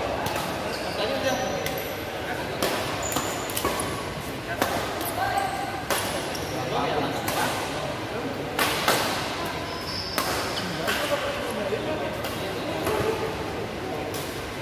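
Badminton rackets striking a shuttlecock in rallies, sharp smacks at irregular intervals from about every half second to every second or so, with short high shoe squeaks on the court mats. Voices chatter in the background of a large hall.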